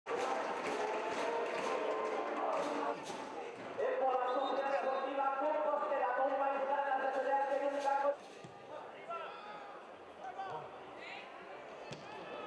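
Voices singing or chanting long held notes, loud for about eight seconds and then cutting off suddenly, leaving quieter stadium crowd noise with a few short calls.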